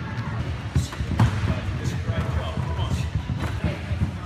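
Running feet thudding on a sports hall's wooden floor as a group of people runs, with indistinct voices.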